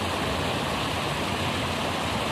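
Fast-flowing water rushing steadily past the embankment, a constant even rush from water released from upstream storage.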